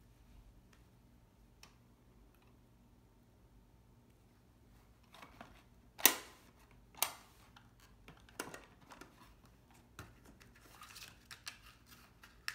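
A plastic toy playset and its cardboard box being handled on a table: a few sharp clicks and knocks, the loudest about six seconds in, then light rustling near the end. Little is heard for the first five seconds.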